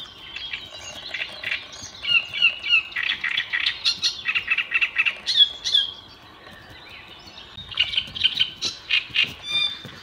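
Great reed warbler singing from the reeds: loud, harsh, chattering phrases repeated over and over, with a short lull about two-thirds of the way through before the song resumes.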